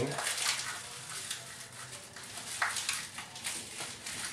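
Clear plastic packaging crinkling and rustling as a new bathtub drain stopper is unwrapped by hand, in irregular small crackles with a slightly louder crinkle about two and a half seconds in.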